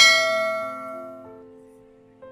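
A bright bell-like chime sound effect, the kind used for a subscribe-and-notification-bell animation, struck once and ringing out as it fades over about two seconds.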